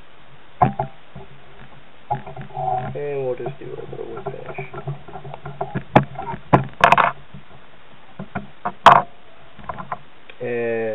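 Sharp clicks and knocks from handling at a fly-tying vise, bunched in the second half and loudest near the end, after a stretch of low muttered speech.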